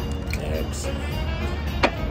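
Background music plays throughout. Near the end comes a single sharp knock as a metal cocktail shaker is set down on the table.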